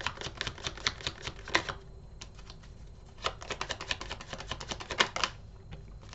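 Tarot cards being shuffled by hand: two bursts of rapid card clicks, the first in the opening second and a half, the second from about three to five seconds in, with a short lull between.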